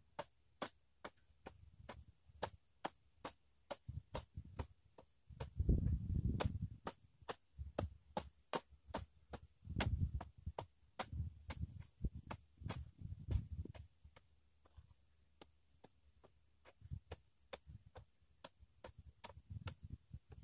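Hand hoe chopping into soil and weeds, dull thuds coming in clusters with pauses between. A steady ticking, about three sharp clicks a second, runs under it throughout.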